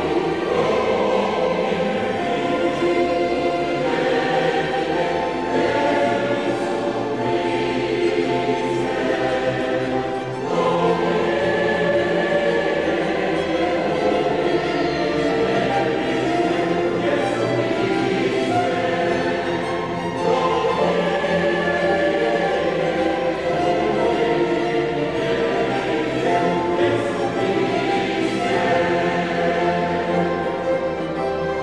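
Large mixed choir singing a sacred piece with orchestral accompaniment, in sustained chords. There is a brief break about ten seconds in, and new phrases begin there and again about twenty seconds in.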